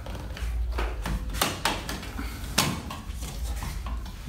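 A few sharp clicks and knocks of a metal wall spotlight and a hand tool being handled as the fixture is unscrewed from the wall, over a low rumble.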